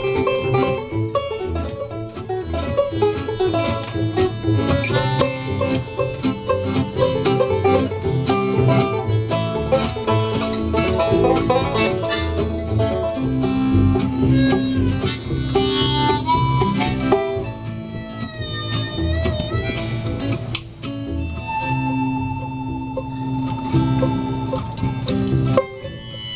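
Live acoustic bluegrass instrumental: banjo, mandolin and acoustic guitar picking over upright bass. In the last few seconds a harmonica comes in with long held notes.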